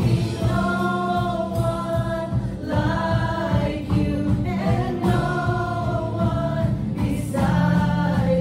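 Live church worship band: several men and women singing a worship song together in long held phrases, over keyboard and guitars.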